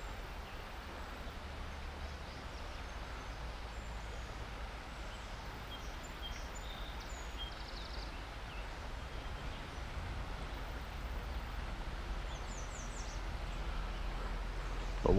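Steady rush of flowing river water around a wading angler, with a low rumble. A few short bird chirps come in around the middle and again near the end.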